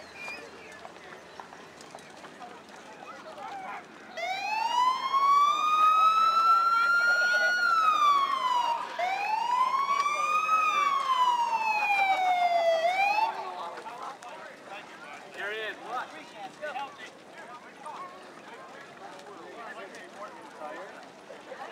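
A siren wailing in two slow rising-and-falling sweeps, starting about four seconds in and cutting off after about nine seconds. Faint crowd chatter lies around it.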